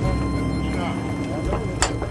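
Boat engine running steadily at idle, with water splashing beside the hull as a small hooked shark thrashes at the surface; one sharp knock near the end.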